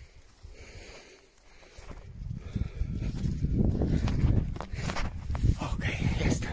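Wind buffeting a handheld phone's microphone outdoors: a low, uneven rumble that swells about two seconds in and stays loud, with a few footsteps near the end.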